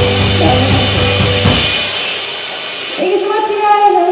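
A live band of electric keyboard, drum kit and vocals playing the last bars of a pop song, with a final cymbal crash ringing out and fading about a second and a half in. Near the end, audience clapping and a voice start up.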